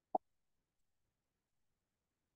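Near silence, broken by one short, low pop just after the start.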